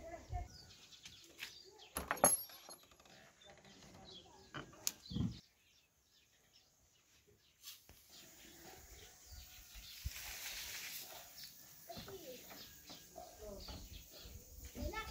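Outdoor yard sounds with distant voices and a few sharp knocks in the first half. After a short quiet gap, dry straw rustles for about a second, as if it is being gathered into a sack.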